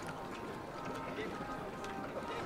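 Faint, distant voices of people talking, with a few light taps or clicks.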